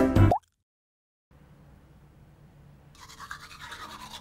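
A loud burst of music cuts off abruptly just after the start, followed by a second of dead silence. About three seconds in, a manual toothbrush starts scrubbing teeth with a fast, scratchy sound.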